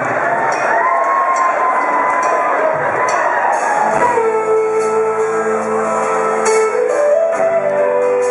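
Live rock band in a large hall: audience noise with a few gliding tones at first, then about halfway through the band comes in with held, sustained chords on guitars and keyboard as the song begins.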